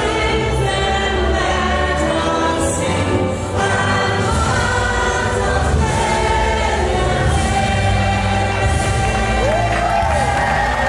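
A standing crowd singing a national anthem together over accompanying music, the voices held and steady with a full bass underneath.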